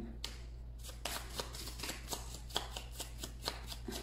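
A deck of tarot cards being shuffled by hand: a quick, dense run of soft card flicks and slaps.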